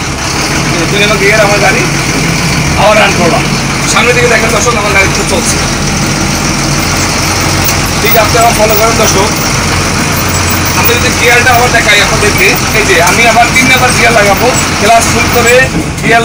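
Double-decker bus engine running steadily as the bus drives, heard from inside the driver's cab. A man's voice talks over it at times.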